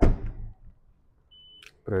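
A car door of a 2019 Hyundai Sonata shut with a single heavy thud that dies away within half a second. About a second and a half in, a short high electronic beep ending in a click, as a paint thickness gauge is switched on for checking the paintwork.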